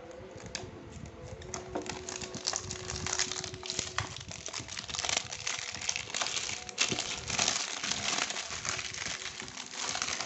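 Clear plastic shrink-wrap being peeled and crumpled off a cardboard box, crinkling and crackling irregularly throughout.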